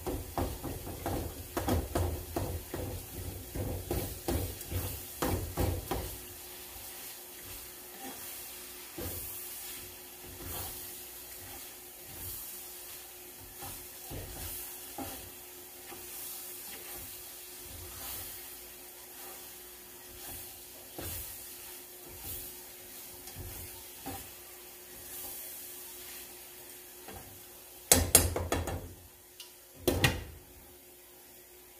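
Ground beef frying in a skillet on a gas burner, the utensil scraping and knocking against the pan as the meat is stirred and broken up, busiest over the first several seconds and then with sparser strokes over a faint sizzle and a steady hum. A louder clatter comes near the end.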